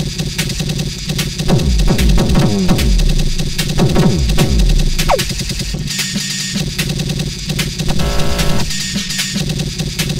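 Eurorack modular synthesizer playing an IDM-style electronic beat: drum and percussion modules (VPME quad drum, SSF percussion) with a synth voice from Schlappi Three Body and Boundary modules. The rhythm is varied live through an IDUM gate processor. There is a brief falling tone about five seconds in and a fast stutter near the eight-second mark.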